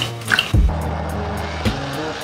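A high-speed blender running steadily from about half a second in, crushing cubes of aloe vera gel to a liquid, with background music underneath.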